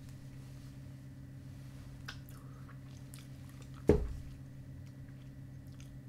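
Faint wet mouth sounds of a small chewing-tobacco bit being worked and chewed, over a steady low hum. A single sharp click with a thud comes about four seconds in.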